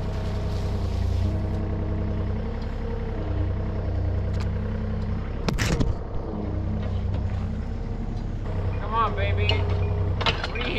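Yanmar mini excavator's diesel engine running steadily under load, with hydraulic whine shifting as the boom and bucket move. A single sharp crack about five and a half seconds in, and a short squeal near the end.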